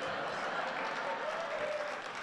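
Audience applauding, a steady even clatter of clapping.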